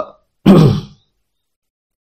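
A single short vocal sound from the male narrator about half a second in: a breathy, falling-pitched grunt or throat-clearing about half a second long.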